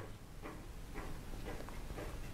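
Faint ticking, about two ticks a second, over a low room hum.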